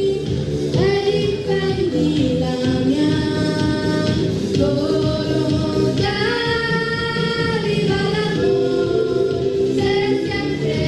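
Two girls singing a duet into handheld microphones over a musical backing track, their voices holding some long notes.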